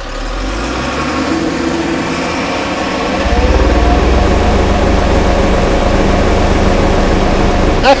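Shantui SR12-5 vibratory soil roller with its Weichai diesel engine running as it compacts sand with the drum vibrating. About three seconds in the engine rises in pitch and gets louder, and a deep low hum strengthens under it.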